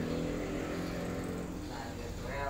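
A steady engine hum, even in pitch, fading slightly in the second half.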